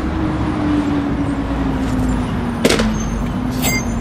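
Street traffic: a road vehicle's engine hum that slowly falls in pitch. A sharp knock comes about two and a half seconds in, followed by a lighter one about a second later.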